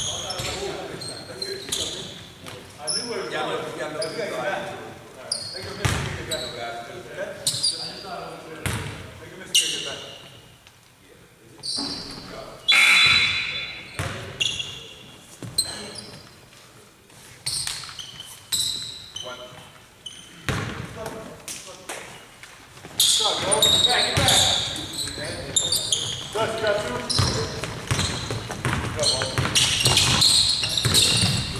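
Basketball being bounced on a hardwood gym floor during play, among players' voices and short high squeaks, all echoing in the large hall.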